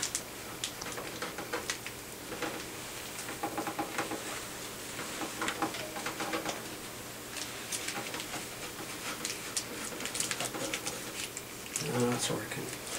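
A folded cloth rubbing furniture polish into a harp's dark wooden pillar: irregular short scratchy rubs and squeaks, one after another.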